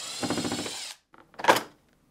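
Milwaukee cordless driver with a quarter-inch nut driver spinning out a hinge end cap screw, a steady motor whine that stops just before a second in. About a second and a half in comes a single sharp clack.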